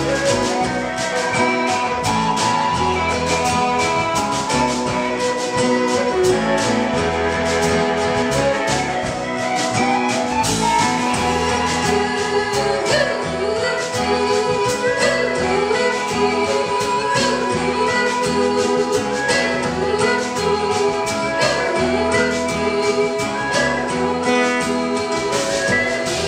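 Live band playing the song with no lyrics sung: a steady beat under held chords, with sliding melody lines through the middle, the music ending near the end.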